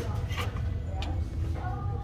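Two light knocks, about half a second apart, as a plastic kitchen scale is set down on a metal store shelf, over a steady low hum and faint background music.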